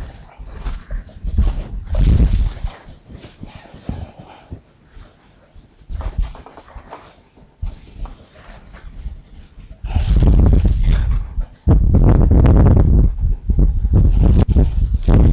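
A whiteboard duster rubs across the board early on. Near the end, loud, close rustling and rumbling handling noise on the microphone comes as papers are handled and the wearer moves.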